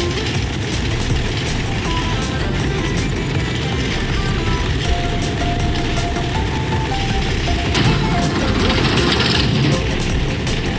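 A bobsled's runners rushing down an ice track, a steady loud rush of sled and wind noise, under background music with a simple melody. The rush grows louder and hissier about eight seconds in.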